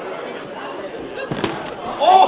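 One sharp smack of a boxing glove landing, about one and a half seconds in, over background crowd chatter.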